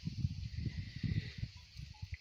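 Wind buffeting the microphone outdoors: a low, irregular rumble that eases near the end, over a steady high hiss.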